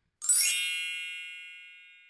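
Chime sound effect: a quick rising shimmer of bell-like notes a moment in, then many bright tones that ring on and fade away over about two seconds.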